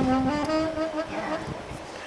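Old silver-plated Amati alto saxophone holding two low notes at the end of a phrase, fading out about a second in, then a short quieter pause before the next phrase.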